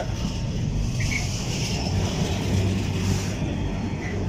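Container flat wagons of a freight train rolling past at close range: a steady rumble of wheels on the rails.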